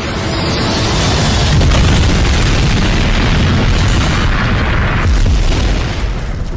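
Dramatized sound effect of a Boeing 747 jet crashing into a building and exploding. A loud rushing roar builds over the first second or so and runs on as a deep rumbling boom, thinning out after about five seconds.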